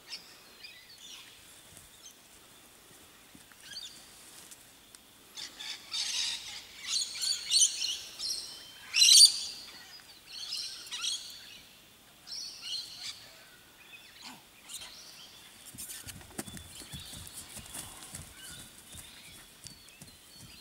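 Wild birds chirping and calling in short, repeated bursts, densest and loudest in the middle, with one sharp loud call a little past the middle. Near the end, a run of low thumps and rumble sits under the calls.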